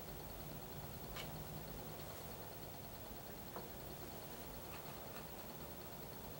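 Experimental G1 bench generator running faintly: a steady low hum with a light, fast ticking above it and an occasional faint click.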